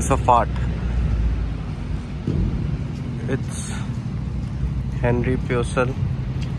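Road traffic: a steady low engine rumble from a vehicle running close by, heaviest in the first couple of seconds. A man's voice comes in briefly at the start and again near the end.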